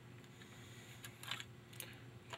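Faint clicks and ticks of a thin metal safety rod being slid out of a Remington Nylon rifle's nylon stock, a few light ticks in the second half.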